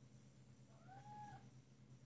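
A domestic cat giving one short, faint meow about a second in, its pitch rising slightly and then falling.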